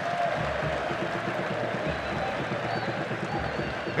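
Football stadium crowd applauding and cheering steadily from the stands as the home side goes in at half-time leading.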